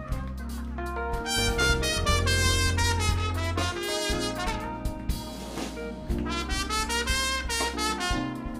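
Live jazz band: a trumpet plays a solo line of quick, changing notes over a walking bass and light drums.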